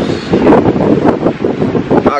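Wind buffeting a handheld camera's microphone: a loud, low rushing that rises and falls unevenly.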